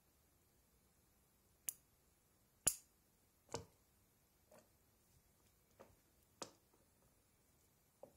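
About six short, sharp clicks and small knocks, spread unevenly over several seconds, the loudest about two and a half seconds in, from DynaVap vaporizers being heated and handled in an induction heater. Near silence between them.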